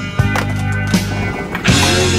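Rock music with a steady bass and guitar, with a few sharp skateboard clacks and slaps on pavement over it.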